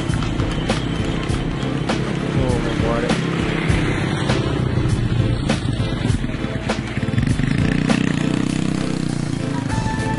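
Busy street-market ambience: crowd chatter and music, with a motorcycle engine running by, loudest about seven to nine seconds in.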